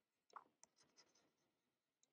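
Near silence, with faint scratching and a light tick from a stylus writing on a pen tablet.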